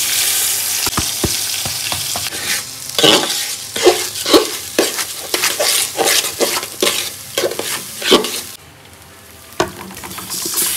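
Dry raw rice poured into a metal pot with a steady rushing hiss, then a metal spoon scraping and spreading the grains around the pot in a run of quick strokes that stops about a second and a half before the end.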